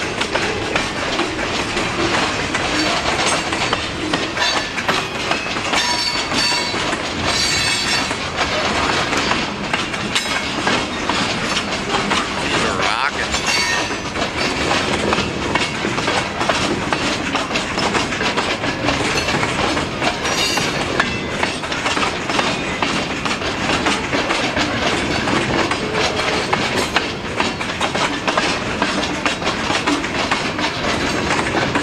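Loaded pulpwood cars of a freight train rolling past at close range: a continuous clatter of steel wheels over the rail joints, with a few brief high-pitched wheel squeals.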